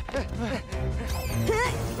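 Background music from an animated cartoon's soundtrack, with short vocal exclamations over it.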